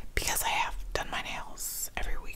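A woman whispering a few words under her breath, with a hissed 's' sound near the end.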